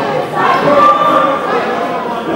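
Several players' voices calling out at once, overlapping into a loud jumble of shouts across the court.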